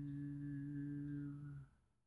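A man humming a single held, low, steady 'mmm' while he thinks, stopping about a second and a half in.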